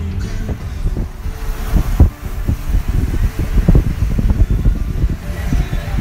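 Wind buffeting the phone's microphone through an open car window while the car drives, an uneven low rumble with gusty knocks, over the car's road noise.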